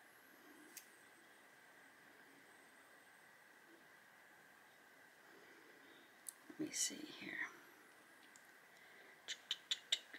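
Quiet room tone with a faint steady high-pitched hum. About six and a half seconds in comes a brief whisper, and near the end a quick run of about five sharp clicks.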